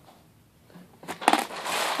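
Hard plastic rattling and rustling as a LEGO minifigure-head storage container is handled, in a loud burst that begins about a second in.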